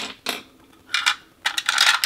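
Lip liner pencils clicking and clattering against one another and a clear acrylic holder as they are handled: a few light knocks, then a quicker run of clicks near the end.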